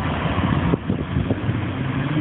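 Lamborghini Gallardo Superleggera's V10 engine accelerating as it approaches, its note rising steadily in pitch from about halfway through, over a low rumbling background.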